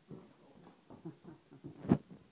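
Footsteps going down stairs: a string of uneven soft knocks, with one much louder sharp thump near the end.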